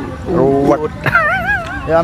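A man's voice making silly sounds, then a high, wavering whine with a quick regular wobble, like a whimpering dog, from about a second in until just before the end.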